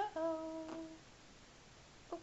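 A baby's short vocal note: it rises briefly, then holds one steady pitch for under a second near the start.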